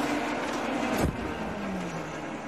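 IndyCar race engines droning on the trackside broadcast sound. About a second in, one car passes close, its pitch dropping sharply.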